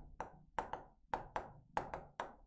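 A stylus tip tapping and clicking against an interactive writing board as a word is handwritten: about eight short sharp taps, loosely in pairs, each with a brief ringing tail.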